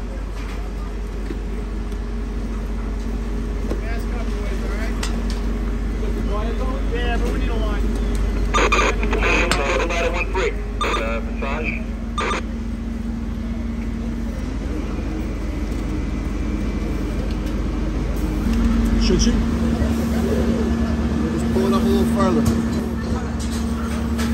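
Indistinct voices of firefighters talking over a steady low rumble, with a cluster of sharp knocks and clicks about nine seconds in. The low rumble drops away about three quarters of the way through.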